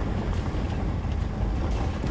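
Car driving slowly along a gravel track, heard from inside the cabin: a steady low rumble of engine and road noise.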